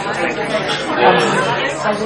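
Many people talking at once: overlapping, indistinct conversation of a mingling crowd, with no single voice standing out.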